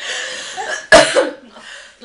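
A woman laughing in breathy bursts, with a sharp cough about a second in.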